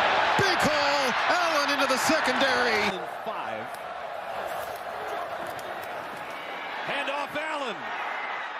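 Loud stadium crowd noise on a football TV broadcast, with a man's voice calling out over it. About three seconds in, it cuts abruptly to a quieter crowd murmur, and a voice comes back near the end.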